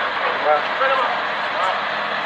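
Steady street noise with vehicle sound, with people talking over it.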